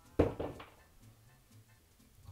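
A single sharp thump a fifth of a second in, dying away within half a second, then only faint background music.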